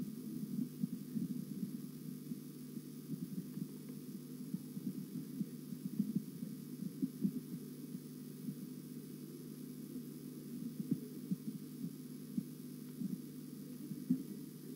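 A steady low hum with faint, irregular low thumps scattered through it.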